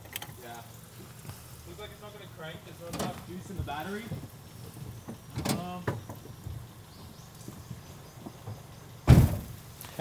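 Faint, indistinct voices in conversation, with one sudden low thump about nine seconds in.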